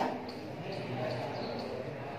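A marker writing on a whiteboard: a series of faint, short squeaks and taps from the pen strokes.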